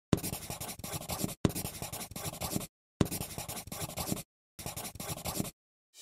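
Felt-tip marker scribbling on paper in four bursts of about a second each, separated by short silent gaps, each burst made of quick strokes.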